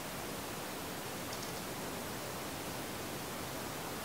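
Steady background hiss of room tone and microphone noise, with no distinct sounds.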